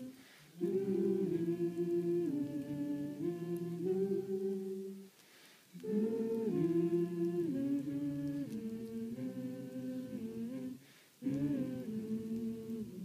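Several voices singing unaccompanied in harmony, in slow, held phrases with short breaks for breath about every five seconds.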